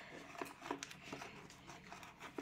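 Faint rustling and a few light taps and clicks of a paper cone and paper cut-outs being handled against a cardboard box.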